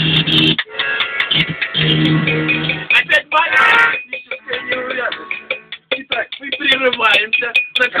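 Amateur music played on accordion and guitar: steady held accordion chords with plucked guitar in the first three seconds, then a man's voice over the playing in the second half.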